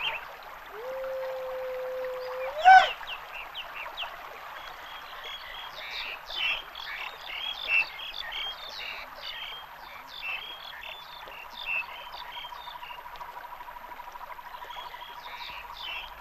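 Frogs calling in a wetland chorus: a long held call rises sharply about three seconds in, then many short chirping croaks overlap, and a steady fast-pulsing trill runs through the second half.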